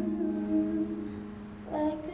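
Electronic keyboard chord held and fading, with a soft hummed note over it; a new chord is played near the end.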